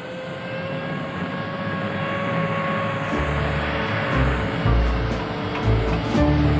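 Jet aircraft engines running: a steady whine over a rushing noise, slowly building. From about halfway, a low pulsing music bass comes in under it.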